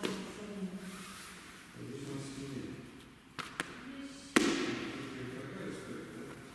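Indistinct voices in the room, two light clicks a little past three seconds, and one sharp thud with a ringing echo about four and a half seconds in, the loudest sound here.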